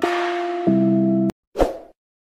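Background music with sustained chords, changing chord once, cuts off abruptly about a second in. A short sound effect follows as the end-screen animation appears.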